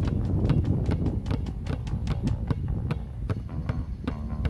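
Two basketballs bounced in a fast dribble on a hard outdoor court, about five sharp bounces a second, with background music underneath.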